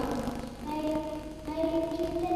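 Children singing slowly into a microphone, holding long notes that step from one pitch to the next.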